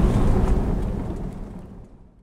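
Steady low road and engine rumble heard inside a moving car's cabin, fading away over the two seconds.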